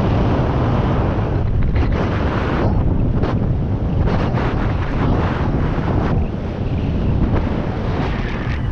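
Loud rushing airflow buffeting the microphone during a fast speed-wing flight, a steady roar that swells and dips in gusts.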